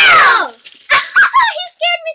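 A child's loud squeal that slides down in pitch over about half a second, followed by children's chatter.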